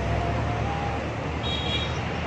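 Steady low rumble of nearby road traffic, with a brief faint high-pitched tone about one and a half seconds in.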